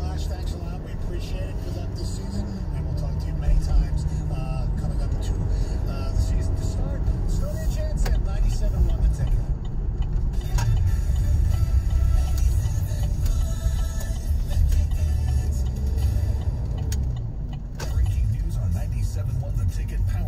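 Steady low rumble of road and engine noise inside a moving car's cabin, under the car radio playing muffled speech and music.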